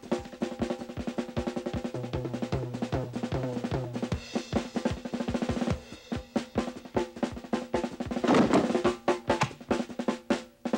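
Instrumental background music led by drums and percussion, with quick, evenly spaced strokes over sustained low notes. Short repeated bass notes come in about two seconds in, and a louder noisy swell follows about eight seconds in.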